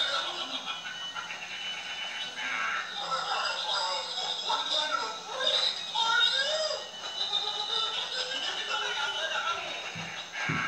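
Product demo audio of a Scary Clown Mirror Halloween animatronic playing back: a clown voice speaking its creepy phrases over spooky background music.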